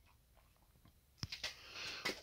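Near silence, then a single sharp click a little over a second in, followed by a few faint ticks and soft rustling, like small handling noises.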